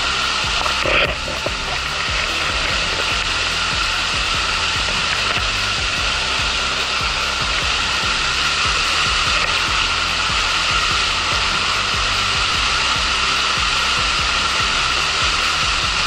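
Steady rush of water over the rocks of a shallow forest stream with small rapids, loud and unchanging, with a brief louder knock about a second in.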